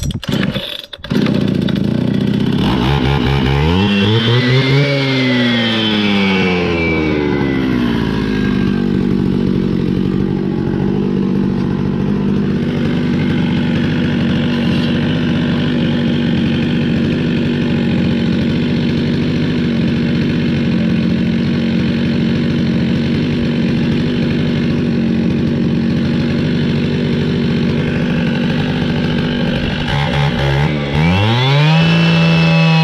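Petrol disc cutter with a diamond blade being pull-started. It catches about a second in, revs up and back down, then idles steadily for the rest of the time.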